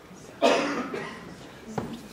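A person coughs once, sharply, about half a second in, followed by a couple of soft knocks near the end.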